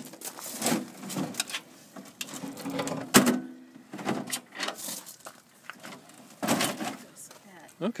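Aluminium folding wheelchair ramp clanking and rattling as its sections are unfolded and laid out, a run of separate knocks with the loudest about three seconds in and another cluster near the end.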